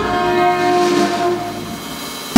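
Alto saxophone and trumpet holding a long note together, fading away over the last second or so.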